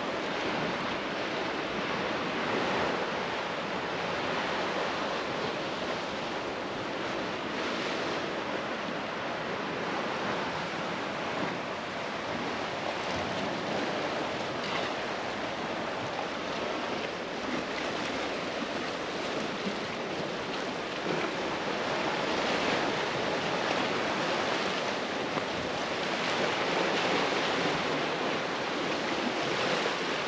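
Small sea waves washing against a rocky shoreline, mixed with wind: a steady, even hiss that swells a little now and then.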